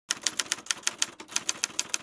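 Typing sound effect: a quick, even run of typewriter-like key clicks, about eight a second.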